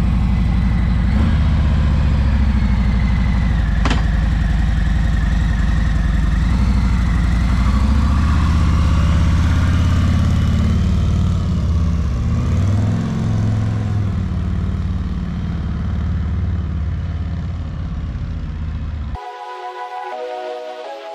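Harley-Davidson Road Glide's V-twin engine running, then pulling away, its pitch rising and falling as it gets under way and slowly fading as it moves off. Electronic music cuts in about a second before the end.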